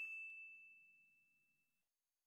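A single bell-like ding sound effect ringing out: one high, clear tone fading away over a little under two seconds.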